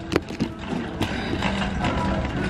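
Metal shopping cart rattling and clicking as it is pushed along, with irregular sharp knocks.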